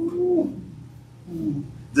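A low, murmured 'mm-hmm'-like hum from a person's voice: one arching hum in the first half second and a shorter one about a second and a half in.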